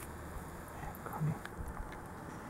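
Quiet handling sounds of hand-sewing a button onto a ribbon rosette on a flip-flop: a few soft taps and rustles as needle and thread are worked through, the loudest a dull thump a little past one second.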